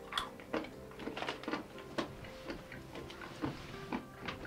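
Salted cashew nuts being chewed: a scattered run of short, crisp crunches and mouth clicks.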